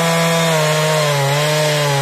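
Husqvarna 372XP two-stroke chainsaw running at high revs while cutting through a thick log, its pitch dipping slightly about halfway through as the chain bites under load.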